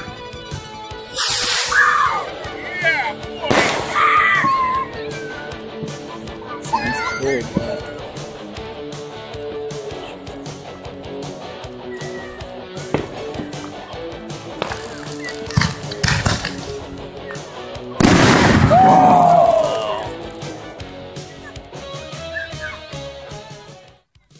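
Fireworks going off: sharp bangs and crackling pops. The loudest come about a second in, near four seconds, and in a longer burst at about eighteen seconds.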